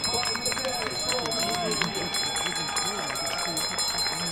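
Indistinct voices talking in the background, quieter than the commentary, over outdoor noise with a few faint steady high tones and scattered light clicks.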